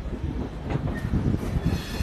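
Passenger train coach running along the track, its wheels rumbling steadily on the rails, heard from an open coach window.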